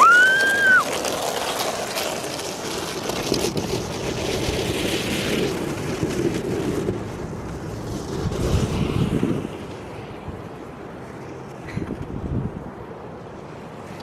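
Wind rushing over the microphone, loud for about the first nine seconds and then easing off. Right at the start there is a short high-pitched squeal that rises and falls.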